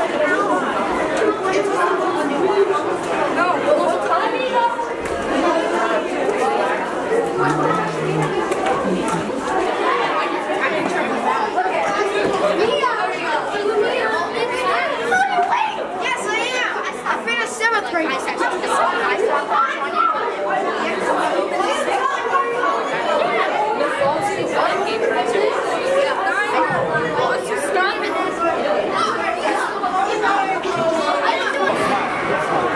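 A group of children chattering and talking over one another, many voices overlapping without a break.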